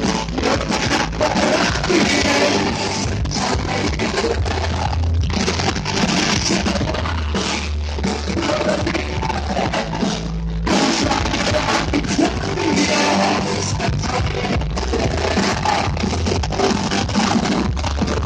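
Live rock band playing loudly, with drums, guitars and vocals, with a brief dip in the sound about ten seconds in.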